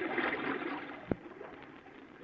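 Radio sound effect of fast-running sewer water, swirling and gurgling, fading after the first second. A single sharp knock about a second in.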